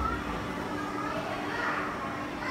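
Children's voices and chatter, with other people talking in the background.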